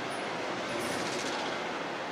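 Steady, even background noise with no speech.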